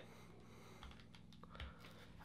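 Near silence: room tone with a few faint clicks and taps from a plastic wireless charging pad being handled.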